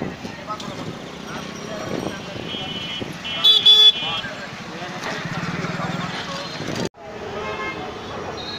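Busy street ambience with a vehicle horn honking loudly a couple of times around the middle, over background voices and traffic. The sound cuts out abruptly about seven seconds in and comes back a moment later.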